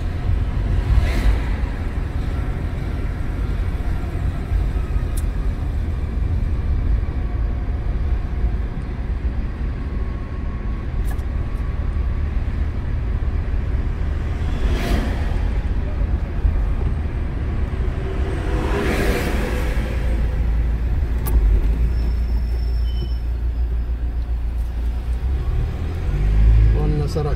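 Steady low road and engine rumble from inside a moving car, with oncoming cars rushing past about a second in, again around fifteen seconds in, and once more a few seconds later.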